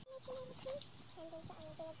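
A chicken clucking faintly in a run of short, evenly pitched notes, several a second.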